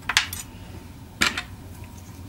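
Hard candy-cane pieces and thin metal cookie cutters clicking against each other and the baking tray as the candy is arranged in the cutters: two short clicks close together at the start and another just past halfway.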